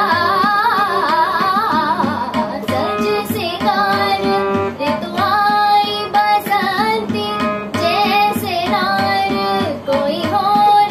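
A girl singing an ornamented melody over her own harmonium. After about two seconds the voice drops out and the harmonium carries the melody in held notes that step from one pitch to the next.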